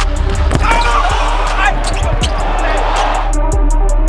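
Basketball game audio under a bass-heavy music track: a ball bouncing on a hardwood court in irregular knocks, with voices in the arena.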